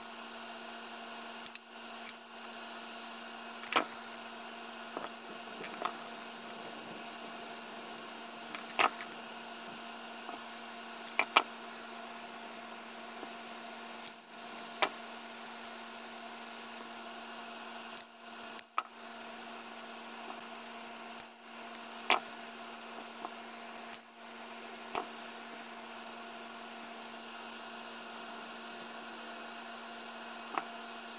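Scissors snipping cardboard and small cardboard pieces being handled: scattered sharp snips and clicks at irregular intervals, over a steady low background hum.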